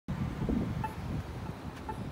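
Locator tone of a Novax accessible pedestrian signal push button: short pitched beeps about once a second, two here. They sound over a louder low rumble of wind on the microphone and street noise.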